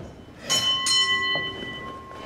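Wrestling ring bell struck to signal the end of the match after the pinfall: two quick strikes about half a second in, the bell's tone ringing on and slowly fading.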